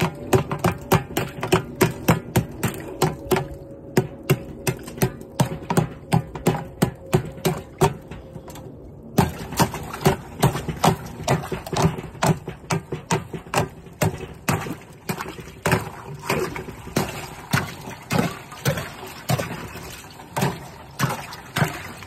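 A hammer repeatedly striking and breaking thick ice on the water in a tub, sharp knocks about three a second, with water splashing.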